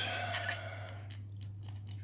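3D-printed plastic toy parts being handled and fitted together by hand: a few small clicks and rubbing noises, over a steady low hum.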